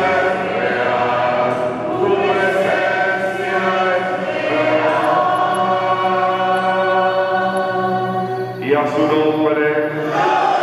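A man's voice, amplified through a microphone, sings a slow hymn in long held notes while the congregation sings along, with a fresh phrase starting just before the end.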